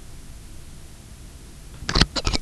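Steady low hum and hiss of an open microphone, then a sharp clatter of a few quick knocks near the end.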